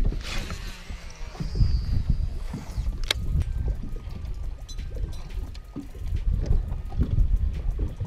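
A Shimano Tranx baitcasting reel paying out line in a cast, a high whizz in the first two seconds, then cranked to retrieve the lure, with a sharp click just after three seconds. Gusty wind buffets the microphone throughout, and small waves lap at the boat.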